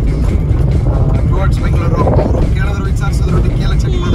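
Steady low rumble of a car's engine and tyres heard from inside the cabin while driving on a rough rural road, with a voice speaking briefly.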